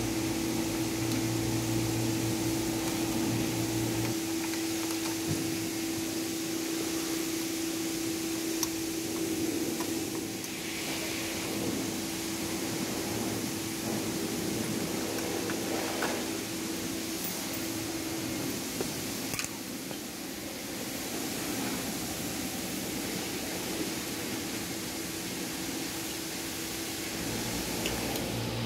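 A steady mechanical hum with a constant tone, like a fan or air-conditioning unit running, whose tone stops about two-thirds of the way through; a lower hum drops out about four seconds in. A few faint clicks and knocks of hand work on the headlight mounting bolts.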